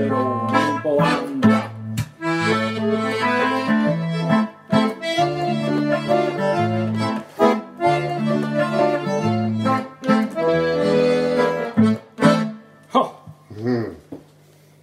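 Diatonic button accordion (durspel) and electric guitar playing the instrumental ending of a Swedish folk song, with held accordion chords and bass notes over plucked guitar. The playing breaks off near the end, leaving a few short, scattered sounds.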